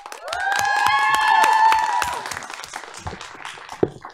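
Audience applauding, with several voices whooping in long held calls over the clapping for about two seconds; the clapping then thins out, and a single thump comes near the end.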